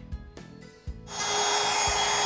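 Compact trim router running at full speed against the edge of a pressure-treated southern pine tabletop, rounding it over: a steady high whine over cutting noise that comes in suddenly about a second in, after a quiet first second.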